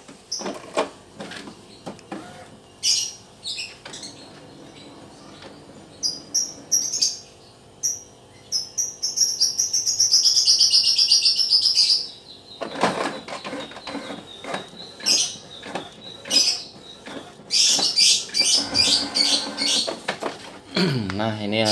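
Canon MP198 inkjet printer running a nozzle check print: a quiet steady motor hum, then a long high whine that falls in pitch about halfway through, followed by a run of clicks and knocks and short high-pitched whirs near the end as the print head and paper feed work.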